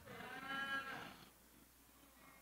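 A person's single drawn-out "mmm" of response, about a second long, faint and off-microphone, rising then falling in pitch.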